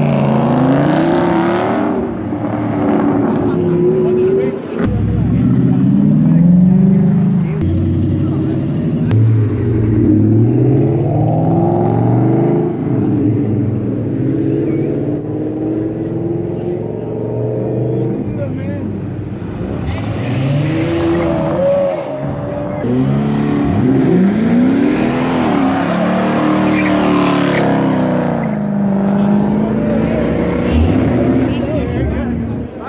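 Sports-car engines revving hard and accelerating away one after another, their pitch sweeping up and falling back again and again.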